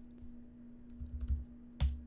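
Typing on a laptop keyboard: a few soft keystrokes entering "1313", then one sharper click near the end, over a steady low hum.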